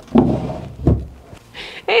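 Wooden bureau drawer pushed shut: a knock with a short sliding rumble, then a dull thud about a second in as the drawer closes.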